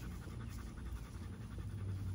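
Rapid, rhythmic panting over a low steady rumble.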